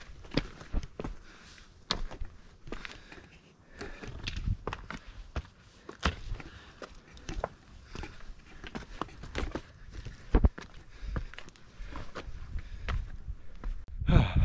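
Footsteps climbing a steep rocky forest trail: an irregular run of crunches, scuffs and knocks as feet land on stones, dirt and twigs.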